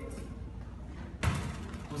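A futsal ball struck once, a single sharp thud about a second in, with a short trailing ring off the hard floor and walls.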